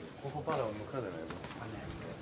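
Low, indistinct murmured speech.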